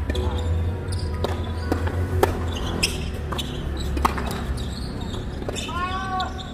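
Tennis ball being struck by rackets and bouncing on a hard court during a doubles rally: a string of sharp, separate pops under half a second to a second apart, over a steady low rumble. A short voiced call comes right at the end.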